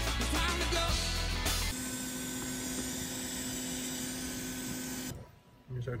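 Steady hiss of a hot-air rework station blowing on a PS5's VRAM chip to melt its solder so the chip can be lifted off the board, with background music over it. The sound cuts off about five seconds in.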